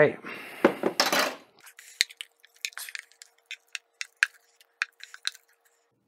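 A spoon or spatula scraping and tapping against a blender jar and a stainless steel mixing bowl as thick ground raw meat is emptied out. A rougher scraping stretch in the first second and a half gives way to many short, irregular clinks and taps.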